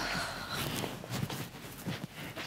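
Footsteps, a few soft thuds on the floor, with rustling of bedding and clothes as people get up off a bed and walk away.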